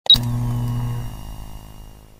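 A short electronic intro sting: a sharp high blip at the start, then a low sustained drone that fades out over about two seconds.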